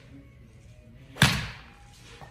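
Pitching wedge striking a golf ball off a turf hitting mat: one sharp, loud strike about a second in, with a short echo.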